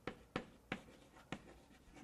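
Chalk writing on a blackboard: four sharp taps over the first second and a half, then fainter strokes.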